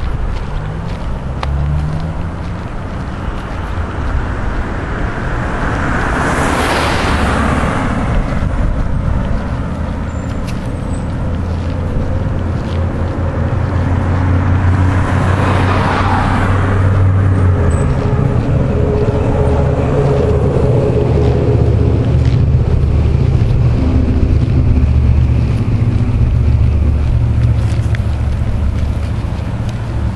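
Steady low rumble of road traffic. Two vehicles pass by, each swelling and fading away, the first a quarter of the way through and the second about halfway.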